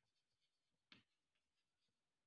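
Near silence with faint chalk scratching on a chalkboard as a word is written, and one short click about a second in.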